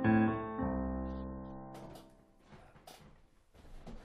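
Piano playing the closing chords of a song: one chord struck at the start and a final low chord about half a second in, ringing out and dying away by about two seconds in. Faint clicks and rustles follow.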